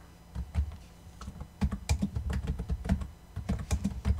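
Typing on a computer keyboard: a rapid run of key clicks that starts about one and a half seconds in, after a couple of isolated taps.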